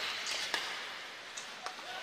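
Ice rink game sound: a steady hiss of skates and arena noise, with a few sharp clicks of hockey sticks on the puck, one about half a second in and two close together near the end.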